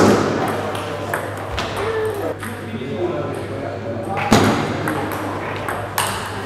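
Table tennis ball clicking off bats and the table in a fast rally, with two much louder cracks of hard-hit shots, one at the start and one about four seconds in. Voices murmur in the hall behind.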